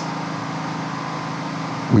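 Steady low hum with an even hiss: the room's background noise in a pause between spoken phrases.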